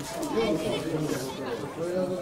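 People talking near the microphone, several voices overlapping in casual chatter.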